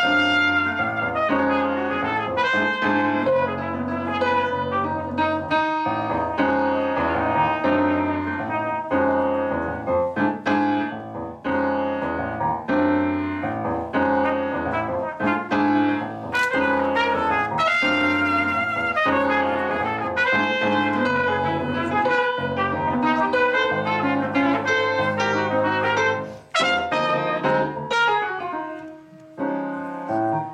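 Grand piano and trumpet playing a jazz piece together, the trumpet holding long notes over piano chords.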